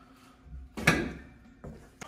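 A large sign board being handled and slid against a wire shelving rack, with one sharp knock about a second in and a lighter knock later.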